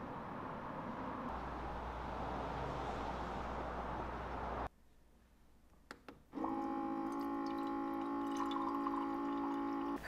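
Steady hiss of rain and runoff water from a downspout, cut off suddenly about halfway through. Then two light clinks, typical of a metal straw against a glass cup, followed by soft background music with sustained tones.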